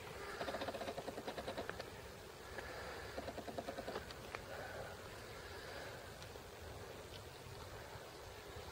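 Faint crunching footsteps on a gravel path, in a quick even rhythm in two spells during the first half, then softer scattered steps.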